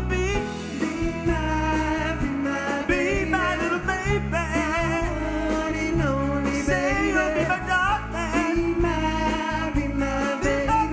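Live band playing a song, with a lead singer and backing vocalists singing over electric guitar, double bass and keyboard; the sung notes carry a wide vibrato.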